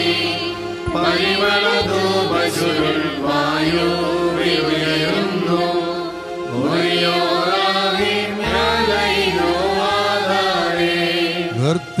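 A church choir of men's and women's voices singing a liturgical hymn, accompanied by an electronic Korg keyboard whose low bass notes are held beneath the melody.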